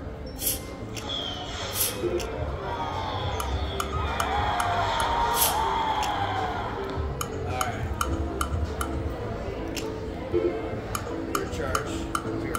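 A video slot machine's sound effects as its reels are spun several times in a row: electronic musical tones and short clicks and chimes as the reels stop, over casino background noise.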